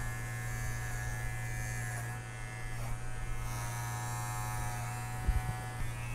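Wahl Figura lithium-ion cordless horse clipper with its five-in-one adjustable blade running with a steady, quiet buzz as it clips the coarse hair along a horse's jawline. A couple of soft knocks come near the end.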